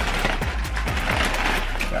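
Paper takeout bags rustling and crinkling as food is pulled out of them, a dense run of quick crackles.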